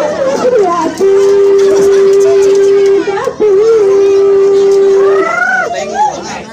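A voice singing long held notes, each opening with a wavering ornament, in the manner of the sung sawer verses (kidung) of a Sundanese wedding saweran. Children and crowd voices can be heard underneath.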